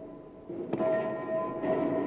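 Tennis racket strings fitted with contact microphones, amplified into a loud ringing bong each time the ball is struck: one hit about three-quarters of a second in and another near the end, each ringing on and fading.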